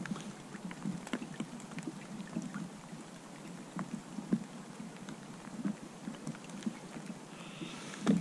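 Steady rain falling, with irregular small taps of drops landing close by, several a second, over a soft hiss.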